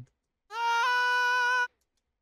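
An UTAU synthesized singing voice holding one steady vowel note for about a second, starting about half a second in, with a small upward step in pitch shortly after the start. The note's envelope is unedited, so it ends abruptly instead of fading out.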